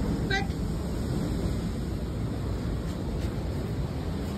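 Steady low rumble of ocean surf, with wind buffeting the microphone.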